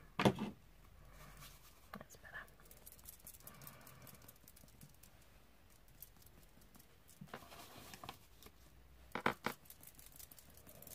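Fan paintbrush working wet shimmer paint over a paper journal page and flicking it on in splashes: faint scratchy brushing with a few short sharp taps, the loudest just after the start and about nine seconds in.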